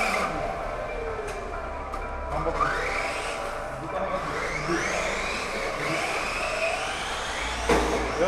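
Radio-controlled model cars driving on wet concrete, their motors whining and rising and falling in pitch with the throttle. A sharp knock comes near the end.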